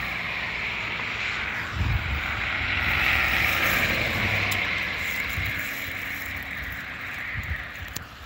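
Cars and a pickup truck driving past close by on a road, their tyre noise and engine rumble swelling to a peak about three seconds in and then fading as they move off.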